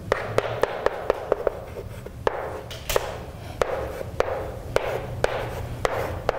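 Chalk writing on a blackboard: an irregular run of sharp taps, with a light scratch between them, as each stroke of an equation is put down.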